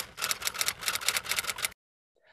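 Typewriter sound effect: a rapid run of key clicks that cuts off abruptly near the end.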